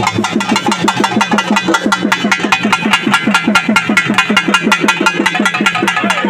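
Fast, steady drumming, about seven strokes a second, each stroke's low note dropping quickly in pitch.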